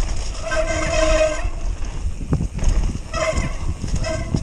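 Wind rushing over the camera and tyres rumbling over a dirt trail during a fast mountain bike descent. A steady, flat-pitched whine from the bike comes twice: about half a second in for roughly a second, and again briefly around three seconds.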